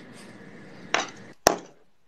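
A short soft noisy sound about a second in, then a single sharp click with a brief ring half a second later, like a small hard object tapping.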